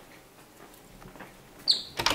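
A louvered wooden closet door being handled: faint light ticks, then one short, high squeak near the end as the door is grasped.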